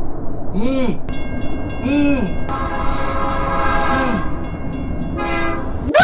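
A train running along the rails with its horn blowing, played as a sound effect in a meme video. A steady rumble runs under three short rising-and-falling horn calls, followed by a long held blast.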